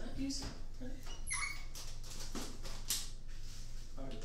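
Small objects being handled and set down, giving a few light knocks, with a short high squeak that falls in pitch about a second and a half in, over a low steady hum.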